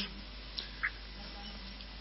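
Faint low hum and hiss on a remote call line, with a small click and a short high blip about a second in: the dirty sound that the host suspects comes from a noisy cable.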